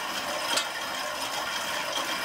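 Spinning bike's flywheel and drive whirring steadily under light, easy pedalling, with a single sharp click about a quarter of the way in.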